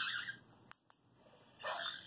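A caique giving a short, harsh squawk near the end, after two faint clicks about a second in.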